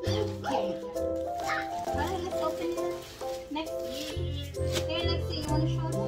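Background music with held bass notes and a melody, with a voice over it.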